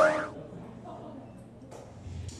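Electronic dart machine sound effect: the end of a stack of electronic tones sliding down in pitch, fading out within the first moment, followed by low background hall noise.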